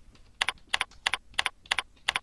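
Computer keyboard keys typed one at a time, entering the digits of a date: evenly spaced keystrokes, about three a second, each a quick double click of key press and release, starting about half a second in.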